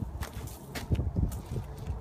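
Work boots scuffing and stepping on mulch and pavement, a few short scrapes and steps, loudest about a second in, over a low rumble of wind on the microphone.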